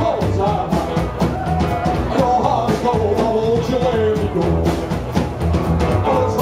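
Live rockabilly band playing with a steady beat on upright bass, drum kit and guitars, a melody line wavering in pitch above it.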